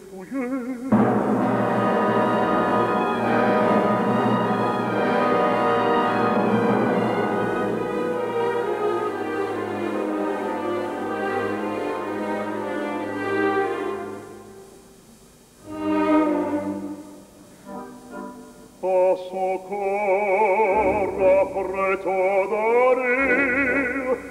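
Opera orchestra playing a sustained passage that fades out just past the middle, then swells briefly. Near the end a baritone voice enters, singing with a wide vibrato over the orchestra.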